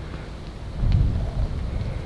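Low rumble of wind buffeting the microphone outdoors, swelling briefly about a second in.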